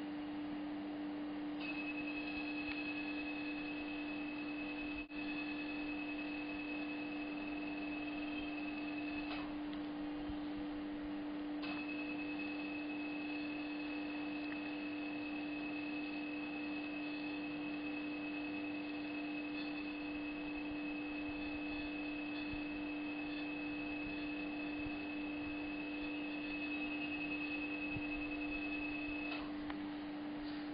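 A dental laser's steady high beep sounding while the laser fires on the lesion: it runs for about eight seconds, stops for about two, then sounds again for about eighteen seconds. A steady low hum of equipment runs underneath.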